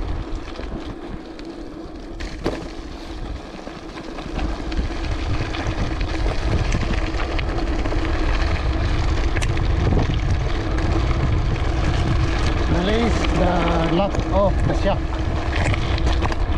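Wind buffeting the microphone and mountain bike tyres rolling over a gravel and dirt track on a downhill run. The noise grows louder about four seconds in as the bike picks up speed.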